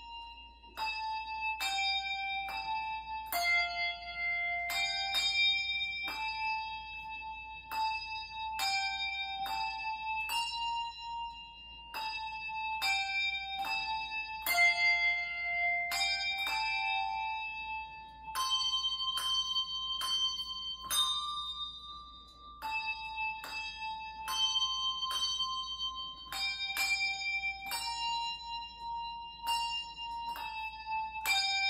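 Solo handbell player ringing a slow melody on a set of brass handbells, two bells at a time. Each note is struck with a bright, shimmering ring and stops short before the next, about one to two notes a second.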